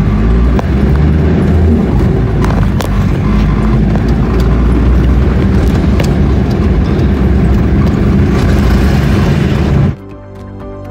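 Four-wheel-drive vehicle driving on a rough dirt track: a steady low engine and road rumble with scattered knocks and rattles.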